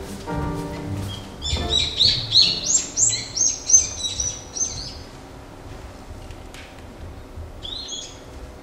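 Scene-change music with sustained notes ends about a second and a half in, giving way to a birdsong sound effect played over the theatre's speakers: a quick run of high chirps that dies away by about five seconds, with one more chirp near the end.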